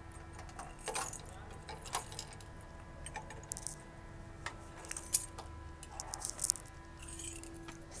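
Light, scattered jingling and rustling while walking with a handheld phone, a short burst every second or so, over a faint steady low hum.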